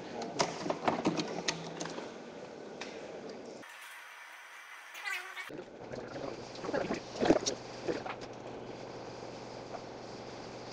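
Clicks and rattles of hands and a small screwdriver working on a plastic clock radio, unscrewing its speaker brackets and lifting the speaker out of the cover. About four seconds in, a brief thin, high wavering sound replaces the clatter for a couple of seconds.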